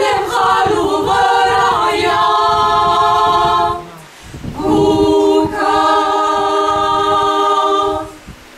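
Mixed choir singing a cappella, without accompaniment: a long sustained chord, a short break for breath about four seconds in, then another long held chord.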